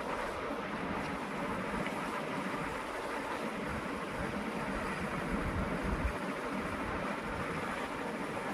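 Steady rushing background noise with an unsteady low rumble and no distinct events.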